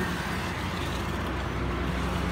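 Steady road traffic: the low, even rumble of passing vehicles' engines and tyres.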